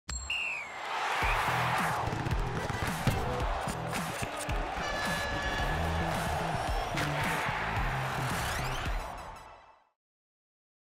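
Electronic intro music with a pulsing bass beat and whooshing swells, one about a second in and another near the end, fading out just before the end.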